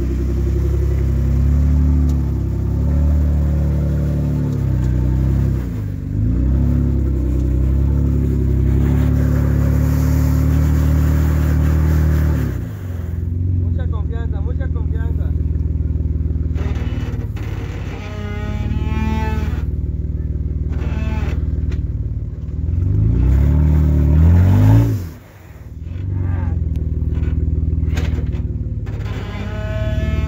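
Off-road Jeep engine working on a steep trail climb, revving up and down unevenly under load. Its level drops sharply for a moment about 25 seconds in, then picks up again.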